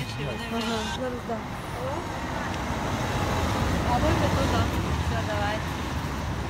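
Low, steady rumble of street traffic with faint voices talking over it.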